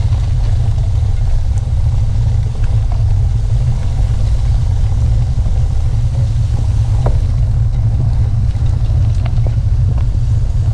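Steady low rumble of wind buffeting the microphone of a camera riding on a moving bicycle, with tyres on the gravel road beneath it. A few light ticks come through, about seven seconds in and again near the end.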